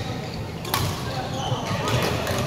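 Badminton racket striking a shuttlecock with one sharp crack about three-quarters of a second in, over the thuds of players' feet on a wooden court floor. The large hall reverberates, and distant voices carry from the other courts.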